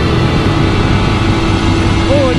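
Yamaha R15's single-cylinder engine running at a steady cruise, its note held at one pitch, under heavy wind rush on the microphone.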